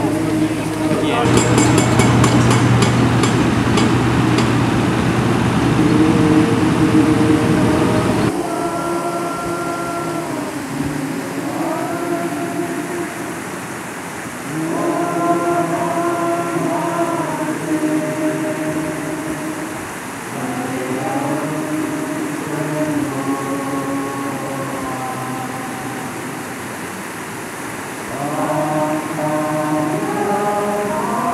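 Voices singing slow, long-held notes that step and glide from one pitch to the next, as in a waiata (Māori song). Before the singing, about eight seconds of loud, low rumbling noise cuts off abruptly.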